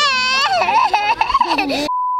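A young child squealing in a very high, wavering voice, then, just before the end, a steady test-tone beep that cuts in abruptly over silence.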